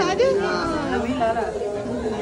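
Speech only: a woman saying a few words over the background chatter of other voices in a crowded room.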